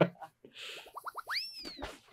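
Cartoon comedy sound effects from a TV show's editing: a quick run of short notes climbing in pitch, then a whistle-like glide that swoops up and falls back down.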